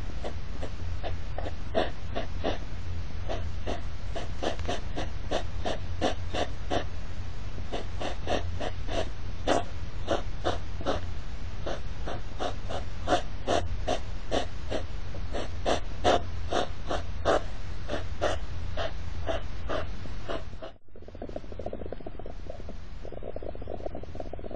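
European hedgehogs snorting during courtship circling: a long run of short, sharp snorts, two to three a second, which stops suddenly near the end. A steady low hum runs under it.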